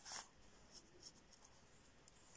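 Near silence, with a brief soft rustle of paper as a hand slides over sketchbook pages just after the start.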